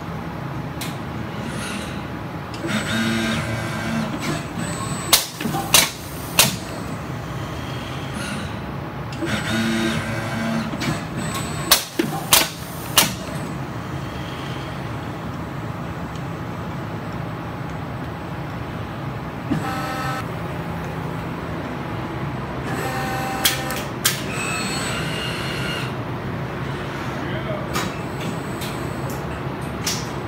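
Pneumatic air-cylinder sprue clipper on a robot-molding cell snapping shut, sharp snaps in two sets of three about five and twelve seconds in, each set after a short pitched machine whine. A steady machine hum runs underneath.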